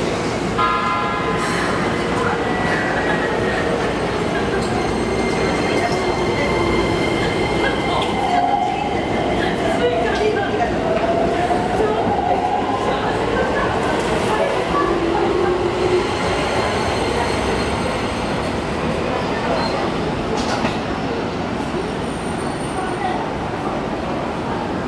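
Keikyu 1000 series stainless-steel electric train pulling out of a station. Its traction motors and inverter whine with tones that bend upward as it accelerates, over a steady rumble of wheels on rail.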